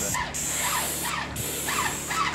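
An airless paint sprayer's gun and extension wand spraying stain: a steady high hiss that breaks off briefly twice, a quarter second in and again just after a second, as the trigger is let go.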